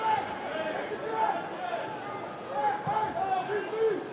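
Football stadium crowd: many spectators' voices shouting and calling over a steady murmur.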